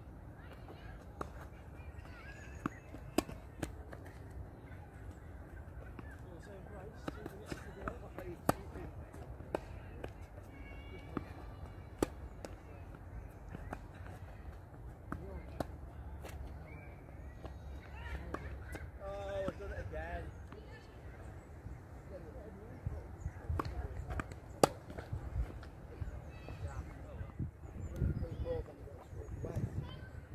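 Tennis balls struck by racquets and bouncing on an outdoor hard court during rallies: sharp pops at irregular intervals, one of them much louder a little before the end.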